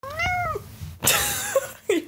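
A house cat meowing: a short meow rising and falling in pitch, then about a second in a longer, lower meow over loud rustling and knocking on the microphone. The cat is tangled up in the microphone and unhappy.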